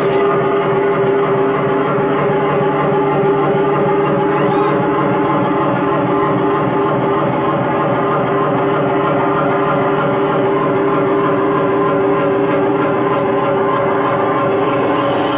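Live electronic noise music from circuit-bent electronics: a loud, steady drone of several held tones that barely changes, with a few faint clicks.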